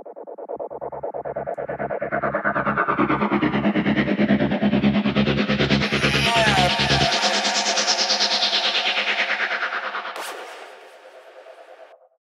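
Playback of a trance track's atmosphere section: sustained synth atmosphere and one-shot effects over a steady kick drum at about two beats a second, with a rising sweep brightening the sound. The kick drops out about seven seconds in, and the atmosphere fades away near the end.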